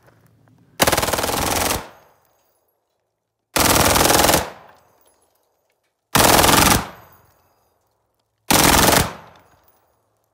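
Belt-fed AR-15 with a forced reset trigger (FRT) firing four rapid strings of shots. The first string lasts about a second and the later ones are shorter, each trailing off in echo.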